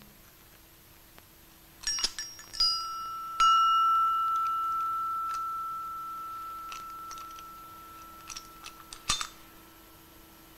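Antique hand-forged iron padlock being opened by hand: a few metallic clicks from the mechanism, then a single clear bell-like ring that fades slowly over about five seconds, and a handful of clicks near the end as the shackle comes free.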